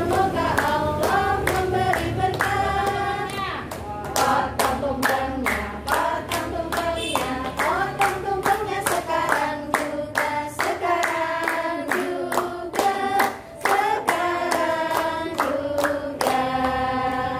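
A group of voices singing together, with many hands clapping steadily in time to the song.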